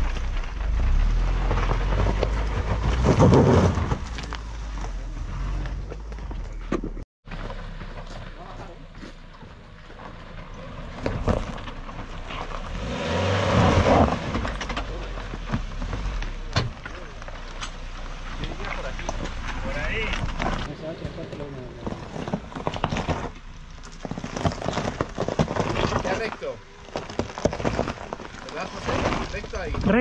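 Off-road 4x4 engine running at low speed as the vehicle crawls over a rocky obstacle, with indistinct voices. The sound cuts out abruptly for a moment about seven seconds in.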